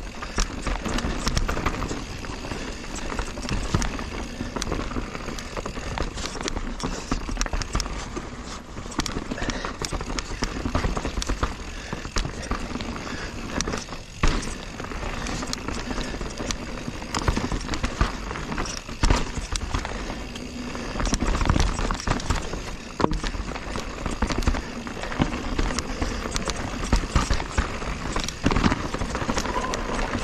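A 2021 Giant Reign Advanced Pro 29 full-suspension mountain bike ridden down a dirt singletrack: tyres rolling over dirt and roots, with many sharp knocks and rattles from the bike over bumps. Low wind rumble on a chest-mounted camera microphone runs underneath.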